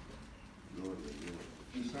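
A quiet pause in a hall, broken by a brief, faint low voice about a second in and again near the end.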